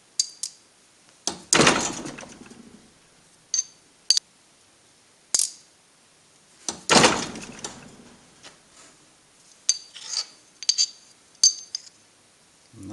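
Fly press ram brought down twice onto a small steel plate over packing, pressing out a bend: two loud metallic thumps, about a second in and near seven seconds, each ringing away over about a second. Light clinks of steel pieces being handled and set down come between and, in a quick cluster, near the end.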